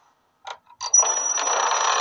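Two short clicks from a locker's combination dial, then the metal locker door opening with a loud metallic clatter. A thin high ringing tone starts with it and holds on.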